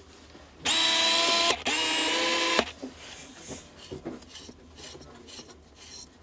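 Camera-body autofocus motor driving the screw-drive Pentax D FA Macro 100mm F2.8 WR lens: two steady whirring runs of about a second each with a short break between, as the focus barrel extends. Faint handling clicks follow.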